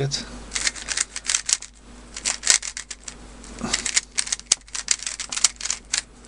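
YJ ChiLong 3x3 plastic speedcube being turned, its layers clicking in several quick bursts with short pauses. The cube is unlubricated and tightly tensioned: very dry, not as smooth as expected and very tight.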